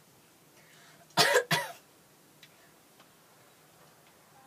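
A girl coughing twice in quick succession, about a second in.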